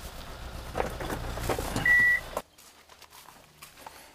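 Small Kia pickup truck's engine running as it drives off along a concrete farm road, with one short, steady high beep about two seconds in. The sound cuts off suddenly at about two and a half seconds, leaving only a faint background.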